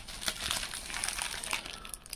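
Plastic packaging crinkling and rustling in a run of small irregular crackles as items are handled and taken out of a bag.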